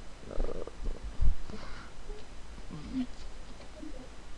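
Low muffled rumbling and a soft thump about a second in, picked up on a voice-call microphone, with faint brief murmurs of hesitation.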